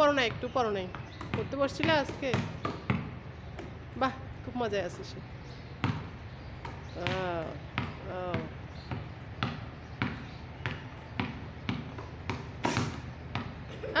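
Basketball dribbled on a concrete court: a steady run of sharp bounces, about two a second, through the second half, with a voice speaking over the first half.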